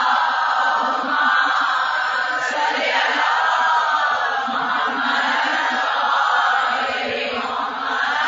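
A congregation chanting aloud together in unison, in long swelling phrases. This is the collective salawat recited in answer to the mention of the Prophet.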